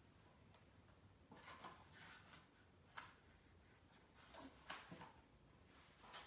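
Near silence: room tone, with a few faint rustles and a soft click.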